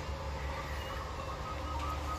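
Steady low background hum with no distinct event, and a faint thin high tone near the end.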